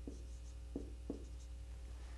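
Dry-erase marker writing on a whiteboard: a few faint, short scratching strokes as a short expression is written.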